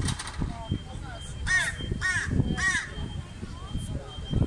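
A crow calling three caws in quick succession, about halfway through.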